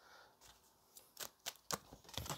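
Oracle cards being shuffled by hand: a few faint, short clicks in the second half.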